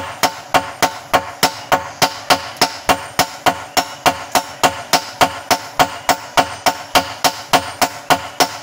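A hand hammer and a sledgehammer taking turns striking a red-hot golok blade of bearing steel on an anvil, in a steady rhythm of about four ringing blows a second.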